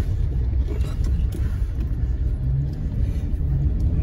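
Car driving along a rough dirt forest track, heard from inside the cabin: a steady low engine and road rumble.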